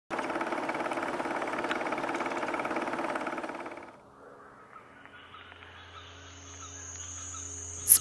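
Channel intro sting: a fast, even rattle over held tones, ending about four seconds in. Quiet sustained music then swells in slowly.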